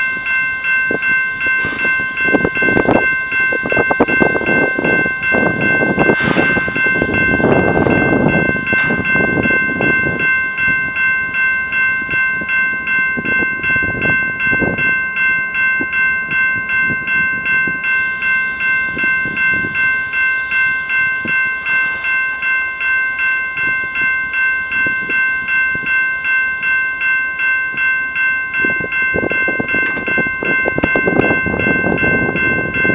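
A warning bell rings steadily at about two strokes a second as a BNSF freight train's locomotive approaches slowly, its rumble swelling and fading underneath.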